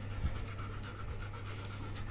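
A yellow Labrador retriever panting softly with its tongue out.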